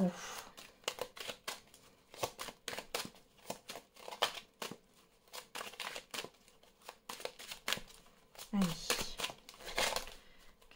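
A tarot deck being shuffled by hand: a steady run of soft, irregular card slaps and rustles, several a second.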